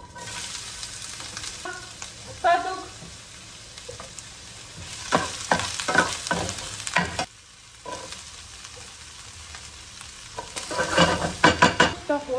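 Sliced onion dropped into a hot frying pan, sizzling steadily from the moment it lands. A spatula scrapes and clacks against the pan as the onion is stirred, in quick bursts around the middle and again near the end, with one brief pitched sound a couple of seconds in.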